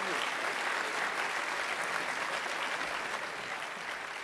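Audience applause, many hands clapping steadily and evenly.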